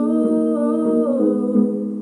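A woman's wordless singing of a slow melody over sustained digital keyboard chords, her voice sliding down in pitch about a second in.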